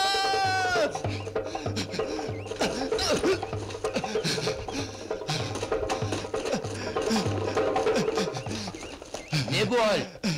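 Film soundtrack: a long held cry that falls away about a second in, then music with a steady low drum beat about twice a second, under short rising-and-falling calls.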